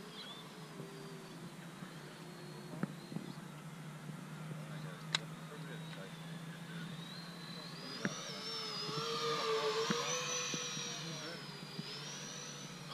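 Twin 70 mm 12-blade electric ducted fans of an RC A-10 jet whining in flight. The whine is faint at first, then grows louder with sweeping overtones from about eight seconds in as the jet passes closer. A few sharp clicks come through it.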